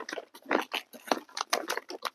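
Cactus potting mix pouring in small spurts from its bag into a terracotta pot: an irregular run of light crackles and patters.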